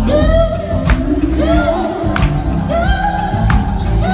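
Male R&B tenor singing high notes live, holding around E5 and climbing toward A5 with quick vocal runs. Live band accompaniment with a few sharp drum hits plays underneath.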